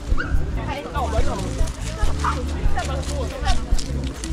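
Dogs yipping and whimpering in short, high-pitched calls as they greet each other nose to nose on leash, with people talking in the background.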